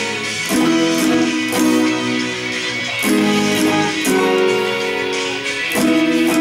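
Two acoustic guitars strumming a chord progression together, one of them capoed, with a new chord about every second or so.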